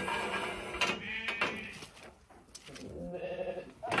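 Zwartbles lambs bleating: several calls, a short one a little after a second in and a longer one near the end.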